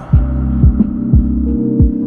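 Instrumental hip-hop beat: deep kick drums with a quickly falling pitch hitting a few times a second under a held low synth chord.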